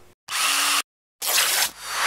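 Two short bursts of drill-like whirring noise, each about half a second long, with an abrupt cut to dead silence between them: an edited power-tool sound effect.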